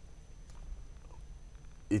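A pause in studio conversation: low electrical hum and quiet room tone with a faint steady high whine, and a man starting to speak right at the end.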